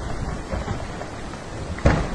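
Landslide on a mountainside: rock and debris coming down the slope in a steady low rumble, with one sharp thud near the end.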